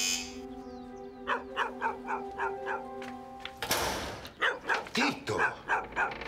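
A dog barking in a quick run of short barks, about three a second, over a held music chord. A short harsh burst of noise comes a little past halfway, and then more barking follows.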